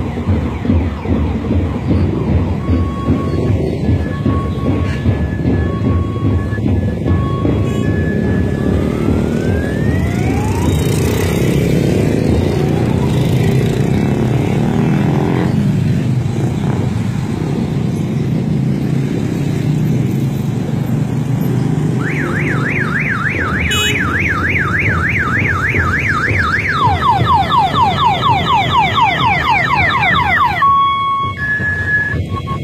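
A motorcade of cars passes with engine and road noise, and short car-horn beeps on two pitches in the first several seconds. From about two-thirds of the way in, an electronic siren warbles rapidly, then switches to a faster, wider yelp near the end.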